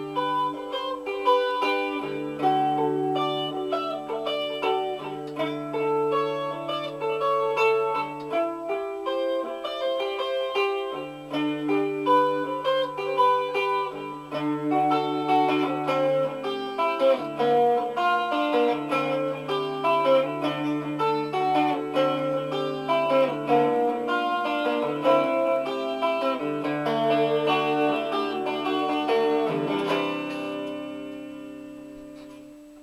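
Hollow-body electric guitar played solo: a picked melody over low bass notes that ring on for several seconds at a time, with no singing.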